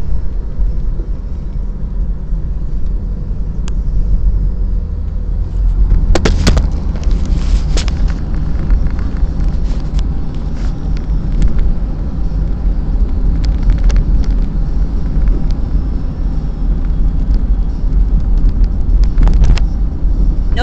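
Steady low rumble of a car's engine and tyres heard from inside the cabin while driving, with a few short clicks and knocks about six to eight seconds in and again near the end.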